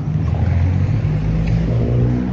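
Steady low rumble of road traffic passing nearby.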